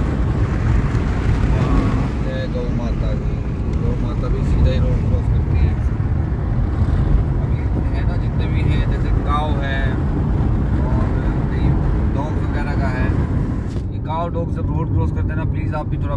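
Steady low rumble of road and wind noise inside the cabin of a car moving along a highway, with a man's voice heard now and then over it. The high hiss thins out near the end.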